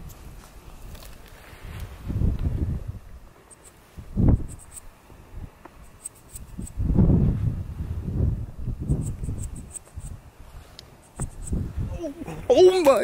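Wind gusting against the microphone in irregular low rumbles, with faint high clicking in short runs between the gusts.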